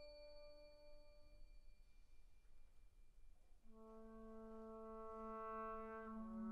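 Quiet opening of a brass band piece: a struck mallet-percussion chord rings and fades away over the first two seconds, then after a brief hush the brass come in softly about 3.7 s in with a held, sustained chord.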